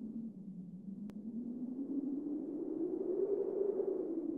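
Low electronic drone of a title-intro sound effect, slowly rising in pitch and easing back near the end. There is a single sharp click about a second in.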